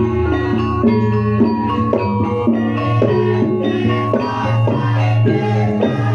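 Live Javanese gamelan music: a melody of pitched notes changing about twice a second over a steady low tone.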